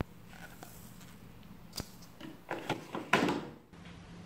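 Plastic clicks and knocks at a washing machine's detergent dispenser drawer. About three seconds in, the drawer is slid shut with a short sliding rattle that is the loudest sound.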